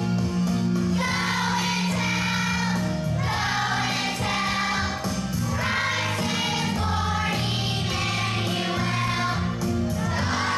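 Children's choir singing a Christmas song over instrumental accompaniment with held low notes.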